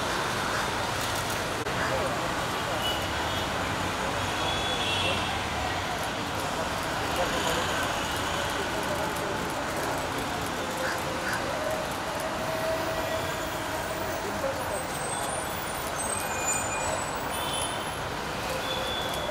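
Outdoor street ambience: a steady wash of road traffic noise with indistinct murmuring voices of people nearby, no single sound standing out.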